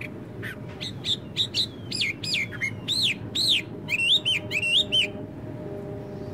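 A songbird singing one phrase of loud, clear whistled notes, each arching up and down in pitch, that starts about half a second in and stops after about five seconds. Under it runs a steady low background noise.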